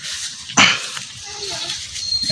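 A dog barking once, a short sharp sound about half a second in.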